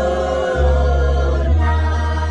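Group of voices singing church music in long held notes, over a sustained low bass note that drops out for a moment and changes about a second and a half in.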